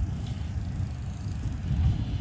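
Wind buffeting a clip-on lavalier microphone, an uneven low rumble.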